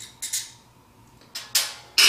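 Small metallic clicks and ticks as a Phillips screwdriver backs the last screw out of a gear motor's armature cap. Near the end comes a louder, sharper clack with a short ring as the screwdriver is set down on the table.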